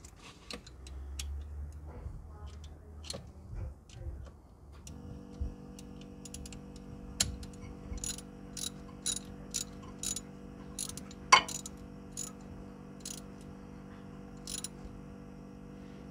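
Ratchet clicking as a hex-bit socket turns a differential level plug home, with sharp ticks about twice a second from around five seconds in. A steady hum runs beneath the clicks from the same point.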